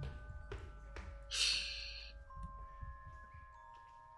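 Quiet film-score music: soft, held bell-like notes layered over one another, with a few faint knocks. A short hiss rises and fades about a second and a half in.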